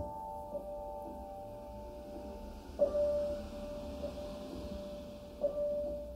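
Slow solo piano improvisation. A chord rings out and fades, then a single note is struck about halfway through and again near the end, each left to sustain.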